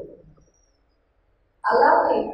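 A woman's speaking voice trails off, a pause of about a second, then her voice comes back loud with a drawn-out syllable near the end.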